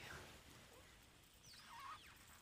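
Near silence: room tone, with one faint, brief wavering squeak gliding down in pitch near the end.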